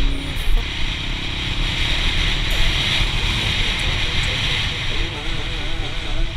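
Yamaha TT-R110's small single-cylinder four-stroke engine running while the dirt bike is ridden along, with steady wind rushing over the microphone, under a song with singing.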